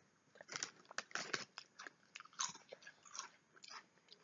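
Quiet, irregular crunching and chewing of thick, triangular tomato-flavoured crisps (Bingo Mad Angles) being eaten.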